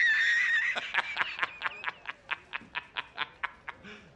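A man laughing hard: a high squealing laugh held for about a second, then a rapid run of short 'ha' bursts, about five a second, fading away near the end.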